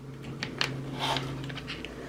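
Faint handling sounds: soft clicks and a brief rustle as a rubber-and-plastic mic mount is pushed and worked against a helmet's side rail, over a steady low hum.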